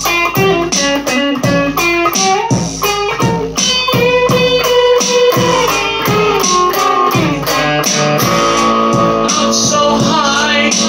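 Electric guitar playing a lead of single notes, some of them held, over a steady beat of about two strokes a second.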